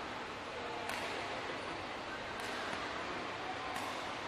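Three sharp, echoing strikes of a badminton racket on a shuttlecock, about a second and a half apart, over a steady hiss of hall ambience.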